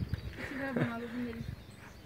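A person's voice calling out one drawn-out syllable about half a second in, then quieter outdoor background.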